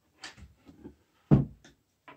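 Handling noises on a melamine-faced chipboard cabinet panel: a few light taps as a plastic marking template is shifted into place, and one solid knock about a second and a half in.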